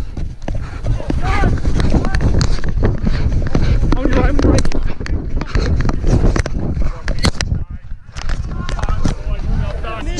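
Wind and movement rumbling on the microphone of a camera worn by a running rugby player, with frequent knocks and thumps from footfalls and handling, and brief voices calling out about a second in and again around four seconds.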